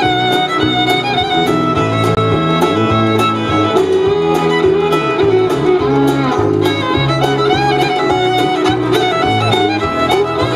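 Live bluegrass band playing an instrumental stretch: fiddle carrying the melody over banjo, acoustic guitar and upright bass, with drums keeping a steady beat.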